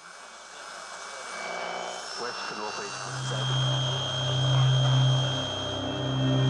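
Cinematic intro sound design: a rushing noise that swells steadily louder, joined about three seconds in by a deep, steady drone.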